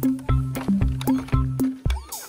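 Background music with a quick steady beat of short bass notes and percussion.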